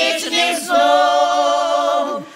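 A group of elderly women sing a Ukrainian village folk song a cappella in several voices. After a short break about half a second in, they hold one long chord that ends right at the close.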